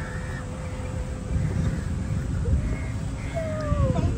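An electric golf cart running along a paved path, with a steady low rumble of wheels and wind and a thin steady whine. Near the end there are a couple of short gliding, whistle-like calls, one falling in pitch.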